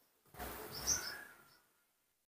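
Baby monkey giving a few short, high-pitched squeaks about a second in, followed by a brief thin call, over a rustle of handling.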